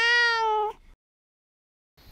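Black cat giving one long meow that ends about three quarters of a second in.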